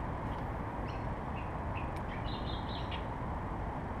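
Birds chirping in short calls over a steady low background rumble of outdoor noise.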